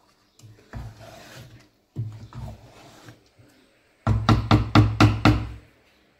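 Wooden spoon scraping through thick tomato stew in a pot, then a quick run of sharp knocks near the end.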